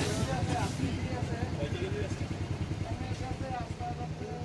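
A vehicle engine running steadily nearby, a low rumble. Indistinct voices talk over it.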